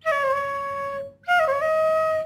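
Bamboo bansuri flute playing two short held notes, each opened with a quick murki ornament that flicks around the neighbouring notes before settling. A brief break comes about a second in.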